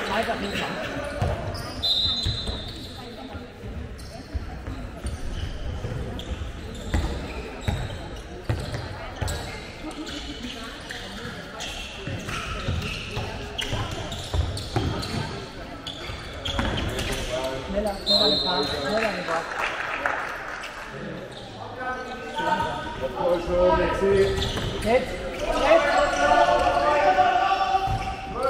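A handball bouncing on the wooden floor of a sports hall as players dribble and pass, with repeated knocks that ring in the hall. Players' and spectators' shouts run under it and grow louder over the last few seconds.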